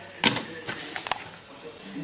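Shellfish shells clacking in a plastic colander as they are cleaned by hand: a sharp click about a quarter second in and a smaller one near the one-second mark.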